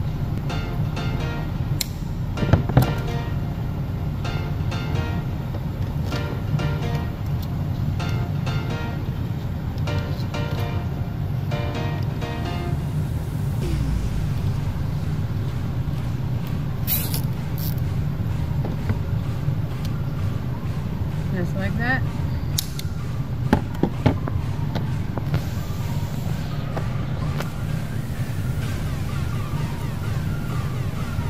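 Background music played steadily over the footage, with a few brief clicks.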